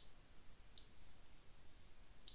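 Two faint computer mouse clicks, one right at the start and one just under a second in, over quiet room tone.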